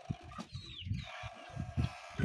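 Chickens clucking faintly, with a short, falling, high bird chirp about half a second in.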